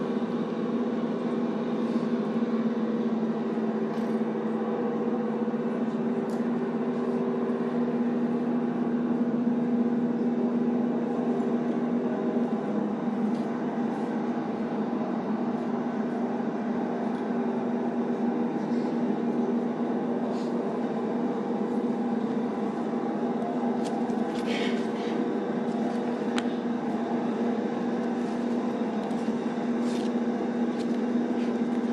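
Steady, unchanging mechanical drone with a constant low hum, like an idling engine or generator, with a few faint clicks near the end.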